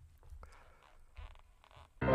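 Near silence: faint room rumble with a few soft rustles and clicks.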